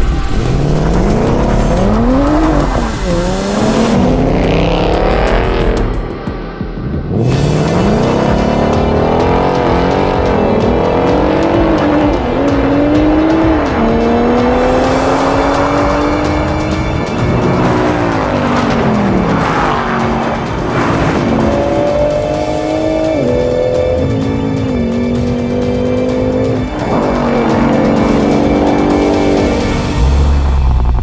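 Ford Mustang Mach 1 V8, Toyota GR Supra turbocharged straight-six and twin-turbo Nissan Z V6 accelerating flat out together down a drag strip. Several overlapping engine notes climb in pitch through the gears and drop back at each upshift, with tire squeal from wheelspin.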